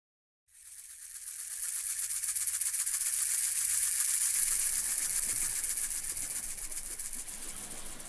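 Asalato (kashaka), a pair of seed-filled shakers joined by a cord, rattling in a fast, even rhythm. It comes in about half a second in, swells over the next second or two and then eases slightly.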